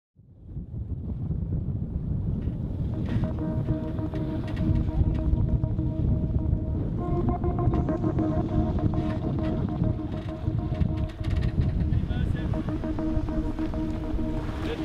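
Steady wind buffeting the microphone and sea noise, fading in at the start. Soft sustained musical chords are held over it and change about halfway through.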